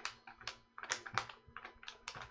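Sheets of animation paper being flipped by hand on a peg bar: a quick, irregular run of crisp paper snaps, about four or five a second.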